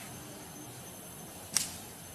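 A single sharp click or snap about one and a half seconds in, over a faint steady background hiss with a thin, high, steady tone.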